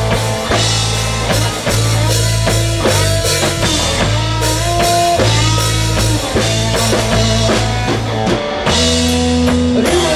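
Live blues-rock band playing an instrumental passage: electric guitar lead with bending notes over a steady bass line and a drum kit keeping the beat.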